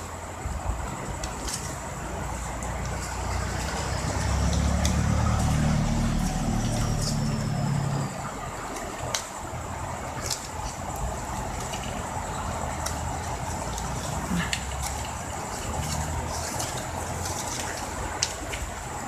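Satin ribbon being handled and folded by hand: light scattered crinkles and clicks over a steady background hiss with a thin high whine. A louder low rumble swells in from about four seconds and drops away about eight seconds in.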